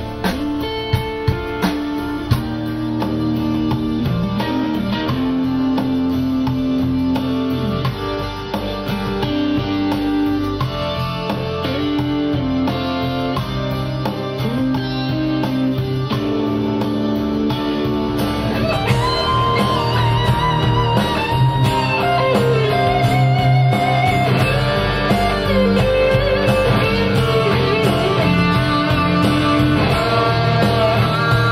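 Electric guitar playing a slow melodic part of held notes and string bends. About two-thirds of the way through, a higher lead line with wide vibrato comes in.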